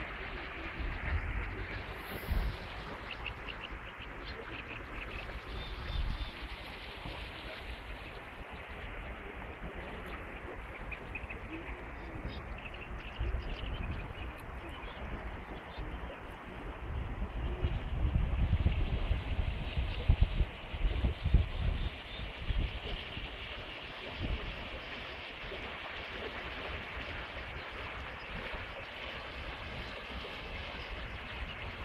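The Vistula in flood rushing past in a fast, strong current, a steady wash of water noise. Wind buffets the microphone in low gusts, heaviest in the middle.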